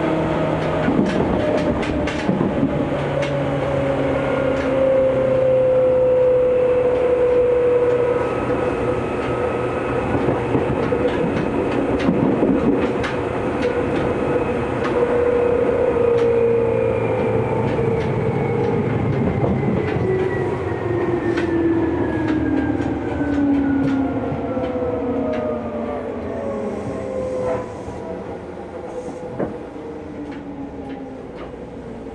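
Seibu 2000-series electric train heard from inside the car, its traction motors whining in several tones that slide steadily down in pitch as it slows, with wheels clicking over rail joints. The running sound eases off near the end as it draws into a station.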